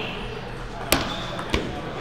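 Table tennis ball striking paddle and table: two sharp clicks about two-thirds of a second apart, with the murmur of a busy hall behind.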